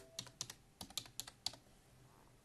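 Computer keyboard being typed on: a quick, uneven run of about ten key clicks over the first second and a half, as a name is entered into a search box, then the typing stops.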